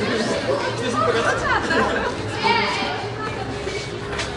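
Background chatter of several people's voices, with no clear words, over a steady low hum.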